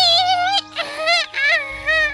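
A high-pitched cartoon voice singing a wavering tune, over a steady background hum.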